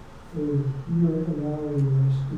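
A man's low voice speaking slowly in a spoken prayer. There is a brief pause at the start, then the voice resumes.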